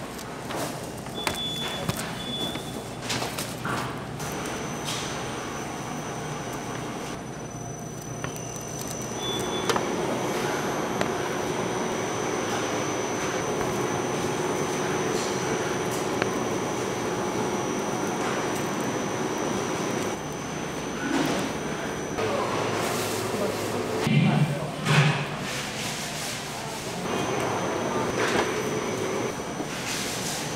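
Workroom ambience of a bakery production line: a machine hums steadily with a thin high whine, while metal trays and a steel ring cutter knock and clatter as sponge cake layers are handled. A few louder thumps come near the end.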